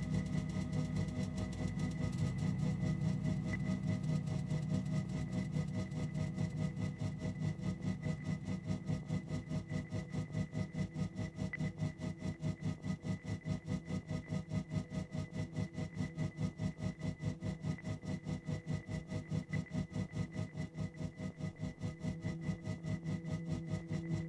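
Electronic ambient drone: a low, sustained hum that pulses rapidly and evenly, about four beats a second, over faint steady high tones.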